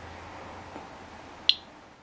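A single sharp, high click about one and a half seconds in, over a steady low hum and hiss.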